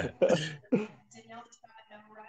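A man laughing: a few short, breathy bursts in the first second, then faint voices.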